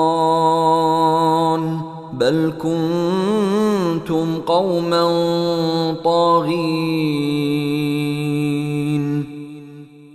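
A man chanting a Quran recitation in Arabic, solo voice with no instruments, in several long phrases of held, ornamented notes separated by short breaths. The last note is held steadily for about three seconds and fades just before the end.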